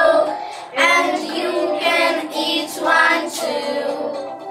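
A small group of young children singing a song together.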